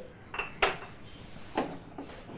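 Kitchenware being handled: about three light knocks and clinks.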